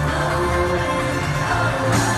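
Live pop music played loud through an arena sound system during a concert, heard from within the audience.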